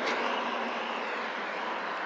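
Steady road traffic noise, slowly growing a little fainter.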